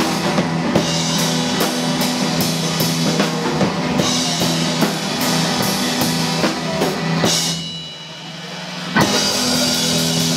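Live rock band playing an instrumental passage: electric guitars and bass over a drum kit keeping a steady beat. Shortly before the end the band drops out briefly, then comes back in together on one loud hit.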